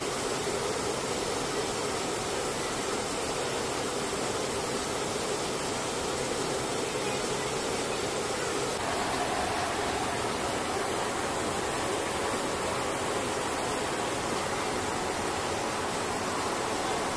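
Steady noise of a C-130H's four Allison T56 turboprop engines in flight, heard from inside the cargo hold. The tone shifts slightly about nine seconds in.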